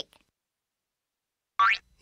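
Silence, then near the end a brief cartoon sound effect: a quick upward-sweeping boing-like tone as a character pops into view.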